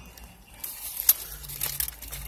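A Lay's potato chip bag crinkling and crackling as it is handled, starting about half a second in, with a sharp crackle about a second in.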